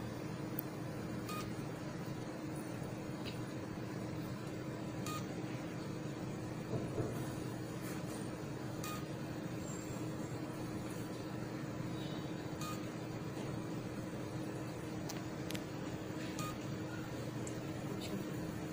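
HIFU machine running with a steady hum while its vaginal handpiece fires, giving a short click-beep at regular intervals of about two seconds.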